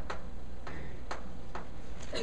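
Chalk tapping and scraping on a chalkboard as a word is written: a short series of sharp clicks, about two a second.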